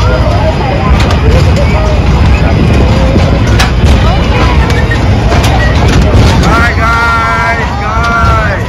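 Loud, steady low rumble of a fairground kiddie ride and its machinery running, with voices of children and adults around. Near the end comes a brief held high-pitched note.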